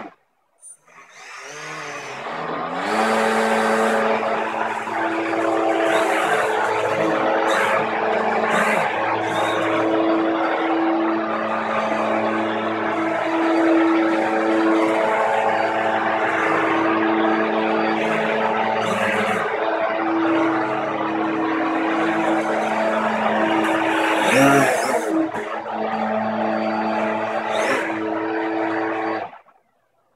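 Propellers and motors of a skirtless RC hovercraft (lift fan and thrust prop) spinning up about a second in, then running steadily with a pitched whine. The pitch wavers briefly a few seconds before the end, and the sound cuts off suddenly shortly before the end.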